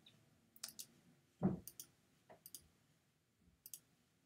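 Light, scattered clicks of computer controls at a desk, a handful over the four seconds, with a soft thump about one and a half seconds in.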